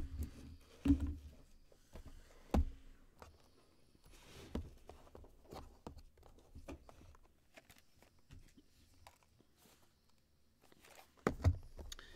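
Trading cards and their packaging handled on a table: scattered knocks and taps, louder in the first few seconds and again near the end, with faint rustling in between.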